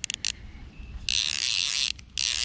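Fly reel's click-and-pawl ratchet buzzing as the spool turns. A few short bursts come at the start, then a steadier run of about a second.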